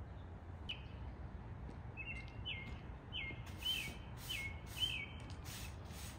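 A songbird gives short repeated chirps, about two a second. From about three and a half seconds in, a stiff broom sweeps across paving stones in strokes about two a second.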